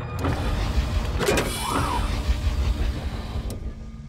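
Sound effect of a large futuristic vehicle running with a low, steady rumble, a hiss about a second in and a whirring whine that rises and then falls.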